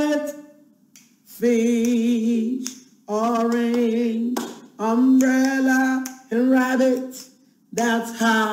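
A woman singing unaccompanied: about five short phrases of held notes, some with vibrato, with brief pauses between them.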